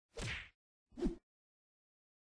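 Two short transition sound effects: a swish, then about a second in a brief thwack with a falling pitch.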